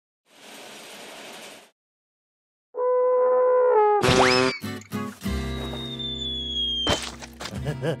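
Cartoon tuba playing a held low note that sags in pitch, then a loud comic blast with rising glides as something shoots out of the bell. A long falling whistle and quick bouncy comic sound effects follow.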